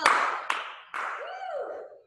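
Hand claps: three sharp claps about half a second apart, each ringing briefly in the room.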